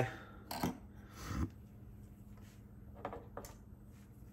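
A few light knocks and slides as metal folding knives are set down and shifted on a wooden tabletop.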